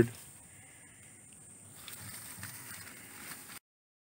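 Faint outdoor background noise with no clear single source, cutting off suddenly to dead silence about three and a half seconds in.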